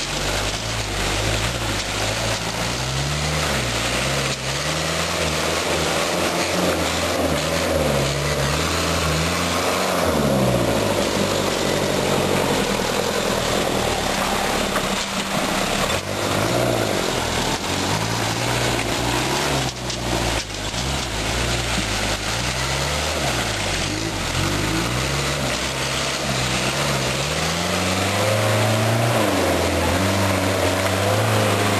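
Series Land Rover pickup's engine running off-road, its revs rising and falling again and again as the throttle is worked through the mud.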